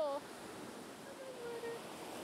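Ocean surf: a steady rush of breaking waves washing up the beach.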